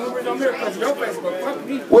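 Several people talking at once: voices chattering in a large room.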